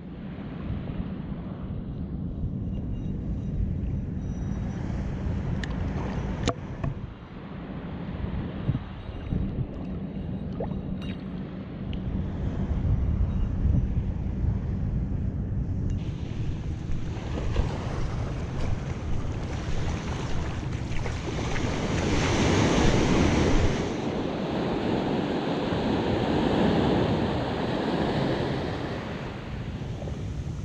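Wind buffeting the microphone over the low wash of small surf. About halfway in, waves wash up the sand in surges, loudest about two-thirds of the way through, with another swell near the end.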